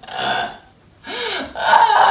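A woman laughing hard in two loud bursts, a short one at the start and a longer one from about a second in.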